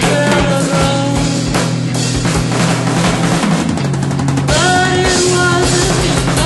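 Avant-rock duo playing without vocals: a busy drum kit under sustained electric guitar notes, with a fast drum roll about three and a half seconds in before new guitar notes come in.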